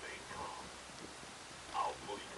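Quiet talking voices in a gondola cabin: faint bits of speech, with one short, louder utterance near the end.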